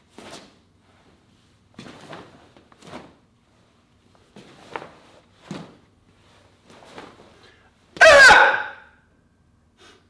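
Taekwondo practitioner performing Taegeuk 2 Jang: short sharp swishes of uniform and breath about once a second with each block, kick and punch. About eight seconds in comes a loud kihap shout lasting about a second.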